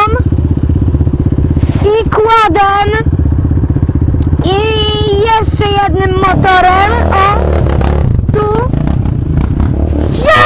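Kayo 250 dirt bike's single-cylinder four-stroke engine running under load while riding, its note rising and falling in pitch with repeated throttle changes.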